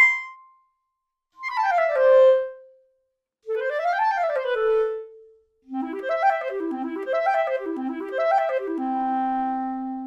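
8Dio Clarinet Virtuoso sampled clarinet playing fast legato runs. A rising run ends on a brief held note, then comes a falling run, then a run up and back down, then an arpeggio figure played three times that settles on a long held low note near the end. Legato Speed is set fully to fast, which makes the interval transitions and clicks more pronounced.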